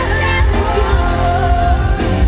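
Live pop song played through a concert sound system: a woman's amplified lead vocal holds a long, wavering note over the band, with heavy bass underneath.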